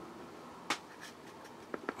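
Small handling sounds at a painting desk: one sharp click about two-thirds of a second in, then a few faint ticks near the end, over quiet room tone.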